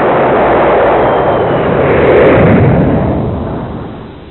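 Explosion sound effect: a long, noisy blast that builds to its loudest a little after two seconds in and then fades away.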